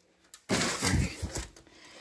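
A brief scuffing, rustling noise about half a second in, lasting about a second, typical of a handheld camera being moved about.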